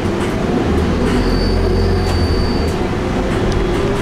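A moving vehicle heard from inside its cabin: a steady low drone with a thin high whine that comes in about a second in and drops away about a second and a half later, and a few faint clicks.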